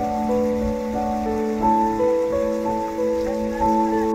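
Slow ambient background music: a steady low drone under a slow melody of held notes. Underneath is an even rushing hiss of water from a shallow stony river.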